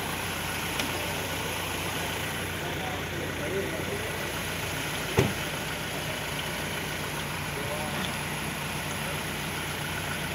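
A vehicle engine idling steadily, with faint voices and a single sharp thump about five seconds in.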